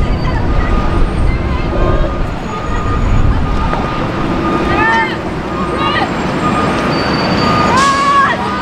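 Outdoor ambience at a soccer game: a steady low rumble with distant shouts from players on the field, a couple about five seconds in and another at the end.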